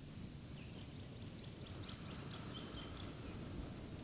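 Faint bird chirping: a run of short, high chirps in the first three seconds, over a low steady outdoor rumble.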